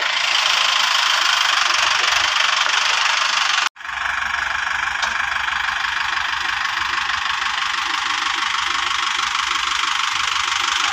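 Tractor's diesel engine running steadily. The sound drops out completely for an instant a little under four seconds in, then carries on unchanged.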